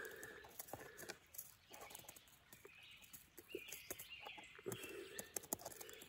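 Faint scattered clicks and crinkles of a small lime seasoning packet being handled, opened and emptied into a meal pouch.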